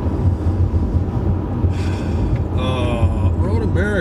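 Steady low road and tyre rumble inside the cabin of a moving Tesla Model 3, with no engine note.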